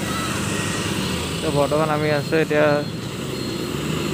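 Motor scooter engine running with a steady low hum. A man's voice speaks briefly over it in the middle.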